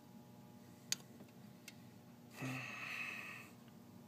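A person's breath: one exhale lasting about a second, past the middle, after a faint click about a second in.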